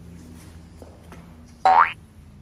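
A cartoon-style boing sound effect: one short springy tone sliding upward, loud, near the end.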